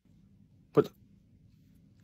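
A single short spoken word, "But", about three-quarters of a second in; otherwise faint room hum close to silence.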